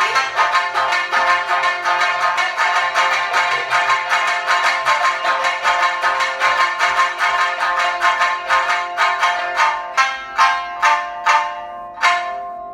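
Two sanshin, Okinawan three-stringed lutes, plucked together in a fast, driving rhythm of many strokes a second. Near the end the strokes slow to a few separate, accented strikes, and the last one rings out as the piece closes.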